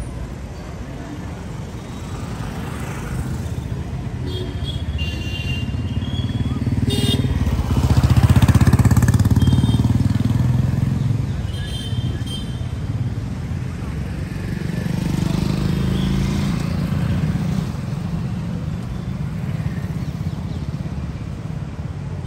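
Street traffic, mostly motorcycles and scooters, running past, loudest about eight seconds in and again around fifteen seconds, over a background of people's voices. A few short high chirps cut through now and then.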